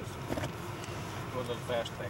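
Steady low rumble of a moving car heard from inside the cabin, with a couple of brief, faint voice fragments over it.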